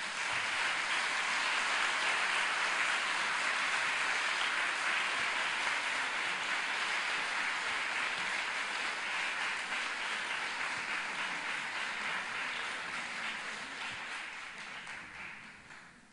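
Audience applauding, a steady wash of clapping that slowly dies away near the end.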